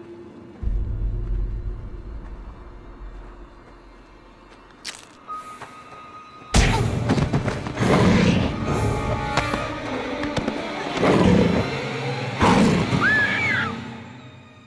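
Dramatic horror film score with a deep low boom that fades, then a sudden loud crash at about six and a half seconds into a loud scuffle of hits and thuds as a vampire lunges and grabs a young woman.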